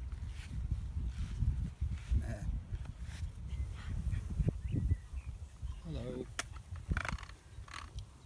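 Outdoor farmyard ambience: an irregular low rumble on the microphone with a few faint, brief animal calls, one of them about six seconds in.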